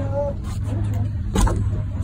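A steady low hum runs under a person's voice, with a single sharp knock about a second and a half in.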